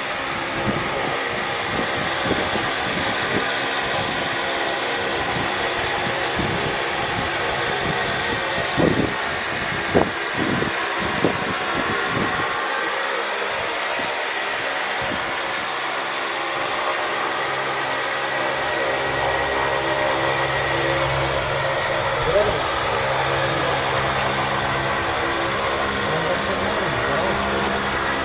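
Steady background noise of a busy indoor space: indistinct distant voices over a mechanical hum like a fan or traffic, with a few short knocks about nine to eleven seconds in. A low hum sets in about two thirds of the way through.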